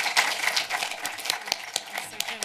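Audience applauding, many hands clapping at once, thinning out in the second half.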